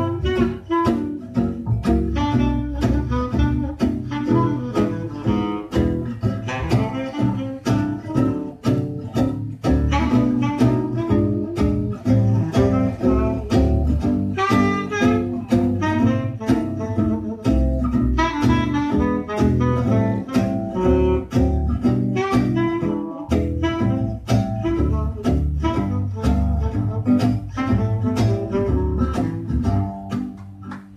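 Live small-group jazz: guitar and double bass keeping a steady swing under a melodic lead, likely a saxophone.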